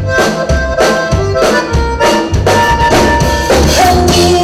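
Live Tejano band playing a song: button accordion over electric bass and drum kit, with a steady beat of about two strikes a second.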